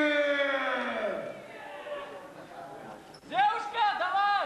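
A voice calling out in long, drawn-out shouts without clear words. One long call falls in pitch through the first second, then two rising-and-falling calls come near the end.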